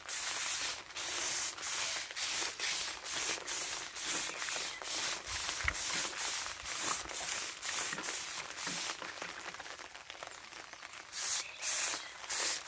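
Hand-pump pressure sprayer hissing as its lance mists liquid NPK fertilizer solution onto plants, the hiss swelling and fading in quick regular pulses. It dies down about ten seconds in, then picks up again near the end.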